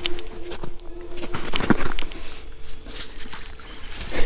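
Close-up handling noise: irregular knocks, taps and rustling while a caught catfish is held and put back down an ice-fishing hole.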